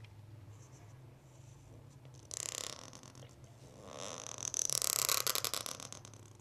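Pen nib scratching across paper in two strokes, a short one about two seconds in and a longer, scratchier one from about four seconds in until near the end, over a faint steady low hum.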